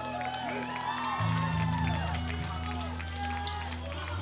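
Electric guitar and bass amplifiers holding low, sustained notes with wavering feedback tones over them during a lull between songs, while voices in the crowd call out. A new, deeper bass note comes in about a second in.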